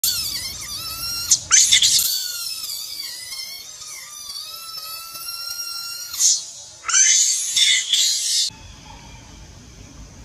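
Baby macaque screaming in long, high-pitched, wavering cries, broken by a few louder, harsher shrieks. The screaming stops abruptly about eight and a half seconds in.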